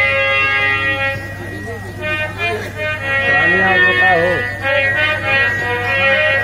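A harmonium holding a steady reed chord, joined about a second in by a voice singing over it, with a low steady hum underneath.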